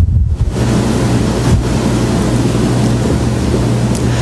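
Steady rushing noise with a low hum beneath it, as loud as the talk around it.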